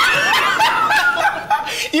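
Men laughing loudly together, a hearty open-mouthed laugh with a second man chuckling along.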